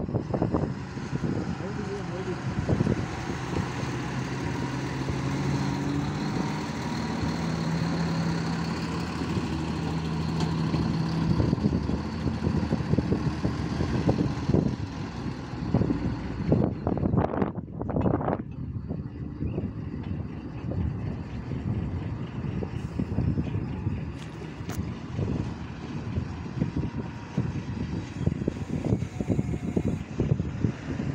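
Massey Ferguson 1035 DI tractor's diesel engine running steadily close by.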